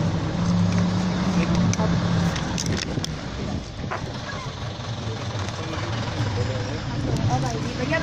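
A vehicle engine idling with a steady low hum, louder in the first two seconds, with voices talking over it.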